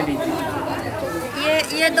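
Speech only: people talking in Hindi with overlapping chatter, one voice repeating "ye".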